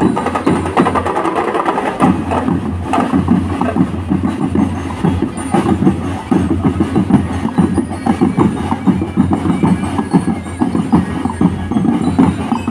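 Loud, busy drumming from a marching percussion band, the hits coming rapidly and continuously.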